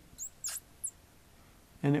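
Dry-erase marker squeaking on a whiteboard while drawing lines: three short, high squeaks within the first second.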